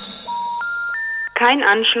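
Telephone special information tone: three beeps stepping up in pitch, each about a third of a second long, the signal that the dialled number is not connected. About a second and a half in, a recorded voice announcement begins: 'Kein Anschluss unter dieser Nummer'.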